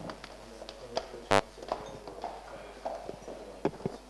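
Faint murmur of voices with a few sharp clicks, and one brief loud buzz about a second and a half in.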